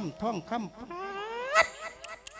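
A man's voice through the microphone and PA making a drawn-out wail in quick up-and-down pitch swoops, then one long rising glide that breaks off sharply about a second and a half in.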